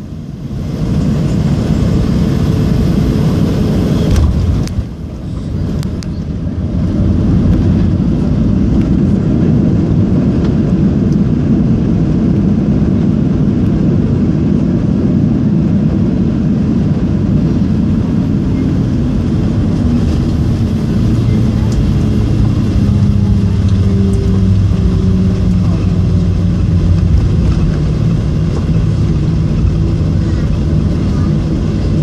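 Boeing 737 heard from the cabin over the wing during its landing rollout: a loud, steady roar of the engines, in reverse thrust, and the rush of the runway, with faint engine tones sliding down in pitch in the second half as the engines wind down.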